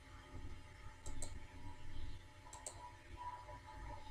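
Computer mouse clicking, a few faint clicks in pairs about a second in and again around two and a half seconds in.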